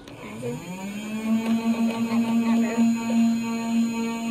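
A person's voice humming one long, steady note that slides up in pitch at the start and then holds level.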